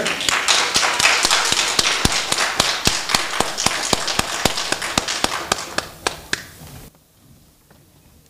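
Audience applauding, a dense patter of many hands clapping that thins out and stops about seven seconds in.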